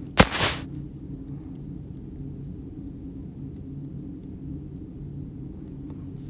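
One sharp click just after the start, followed by a steady low hum with a faint low drone.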